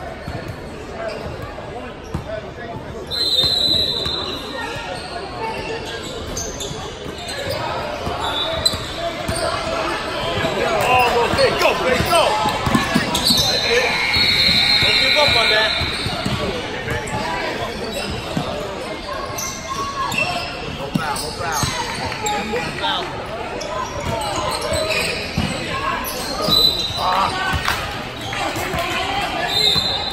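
Basketball game in a large gym: the ball bouncing on the hardwood court and players moving about, over voices from players and spectators, with a few short high-pitched tones.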